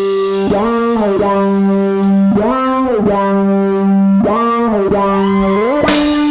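Electric guitar playing alone, holding one sustained note and bending it up and back down several times. The drums and band come back in right at the end.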